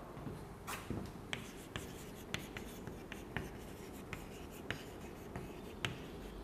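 Chalk writing on a blackboard: a string of faint, short taps and scratches as letters are written.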